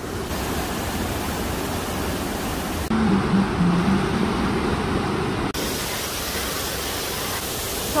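Steady rushing of water from small waterfall cascades in a rocky mountain stream. The sound shifts abruptly about three seconds in and again about five and a half seconds in.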